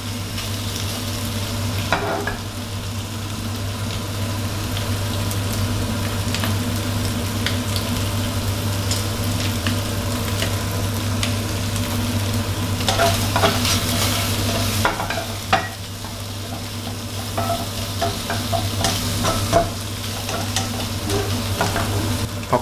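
Shrimp and chopped garlic sizzling in hot oil in a non-stick wok over high heat, with a wooden spatula scraping and tapping the pan as they are stirred; the strokes come thicker a little past the middle. A low steady hum runs underneath.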